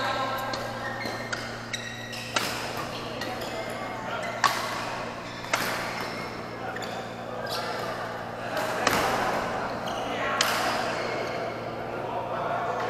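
Badminton rackets striking a shuttlecock during a rally: a series of sharp, echoing cracks at irregular intervals of about one to three seconds, in the reverberation of a large sports hall.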